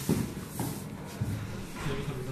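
Stertorous, rattling breathing (charczenie) from a casualty, a sign of difficulty keeping the airway open, in short rasping snores. There is a sharp knock just after the start.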